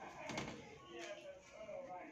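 Faint voices talking in the background, with a soft click about a third of a second in.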